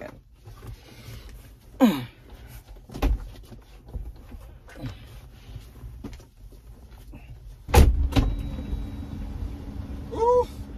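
A few knocks and rustles of someone moving about in a car seat, then, near the end, a car engine starting with a loud low burst and settling into a steady idle, started to run the air conditioning.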